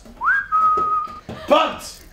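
A person whistling one clear note: a quick upward swoop, then a slightly lower pitch held for under a second.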